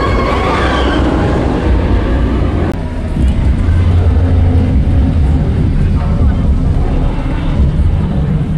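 Steel inverted roller coaster train rushing past close by with a loud rumble, its riders screaming, for the first few seconds. After that a deep, steady low rumble carries on.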